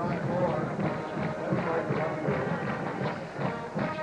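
Stadium crowd noise, a mass of voices, with band music playing through it at a steady level.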